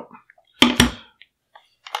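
Two sharp knocks in quick succession a little over half a second in, a detached pistol brace set down on a bench, followed near the end by a few faint clicks of the gun being handled.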